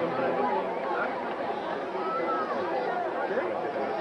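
Crowd chatter: many people talking at once, their voices overlapping into a steady babble with no single voice standing out.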